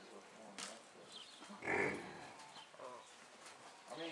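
A large animal, either the cutting horse or the bison it is working, gives one short, loud, breathy blast about halfway through. Quieter sounds lie around it.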